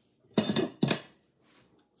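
Glazed pottery mugs clinking and knocking against each other and the kiln shelf as they are lifted out of the kiln: two sharp clinks, the second ringing briefly, about half a second and a second in.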